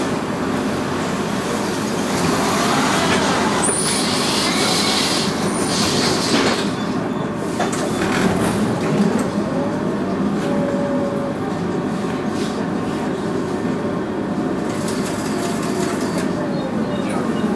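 Tram running with a steady rolling rumble. About ten seconds in, an electric motor whine rises in pitch and holds as the tram gets moving, then begins to fall near the end.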